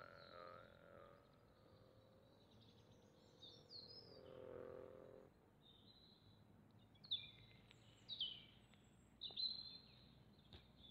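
The last note of a bass jaw harp (Tatar kubiz) dying away in the first second, then faint ambience: a brief low hum midway and a few short, high bird chirps, most of them in the second half.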